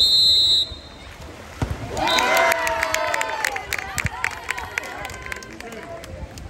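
A water polo referee's whistle gives one short, high blast of about two-thirds of a second. About two seconds later spectators break into shouting and cheering, with some claps, which fades after a couple of seconds.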